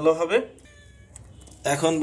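A man speaking in Bengali, his voice gliding sharply upward at the end of a word, then a pause of about a second with only faint, thin high tones before he speaks again.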